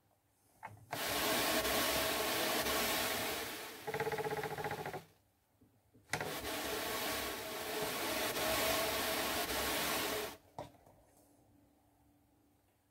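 Hand-cranked drum carder being turned, its wire carding cloth brushing fibre onto the big drum with a loud rasping whirr, in two runs of about four seconds with a short pause between them.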